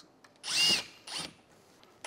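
Cordless drill driver with a Phillips bit backing a screw out of the crate lid. A burst of motor whine rises in pitch about half a second in, followed by a short second pulse.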